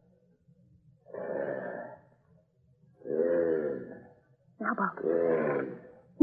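A low voice making three drawn-out wordless groans, each about a second long, on an old radio-drama broadcast recording.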